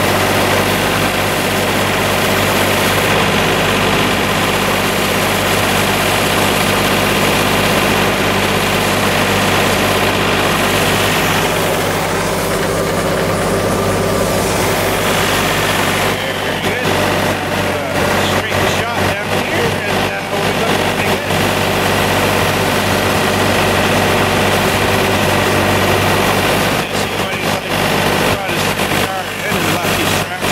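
John Deere 2720 compact tractor's three-cylinder diesel running steadily while its front-mount rotary broom spins through snow with a loud, continuous brushing hiss. From about halfway through, the sound turns choppy and uneven.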